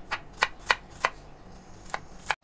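Chef's knife chopping fresh ginger on a wooden cutting board: a quick run of sharp taps as the blade strikes the board, then a short pause and one more chop near the end.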